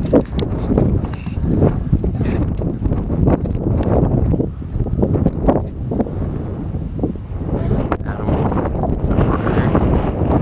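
Wind buffeting the microphone, a steady low rumble throughout.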